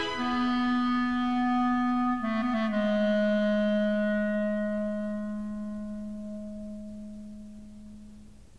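Solo clarinet in a zarzuela orchestral recording. It holds a long note, plays a quick turn of a few notes about two seconds in, then settles on a lower note that it holds while it slowly fades away.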